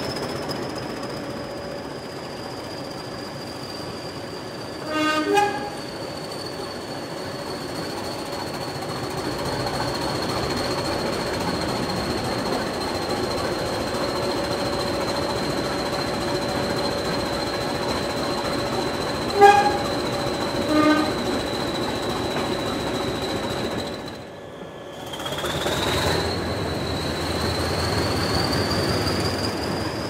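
English Electric Class 20 diesel locomotive's 8SVT engine running under way, with a steady high turbocharger whistle that sags slightly and then rises near the end. Short horn blasts come as a pair about five seconds in and another pair around twenty seconds in.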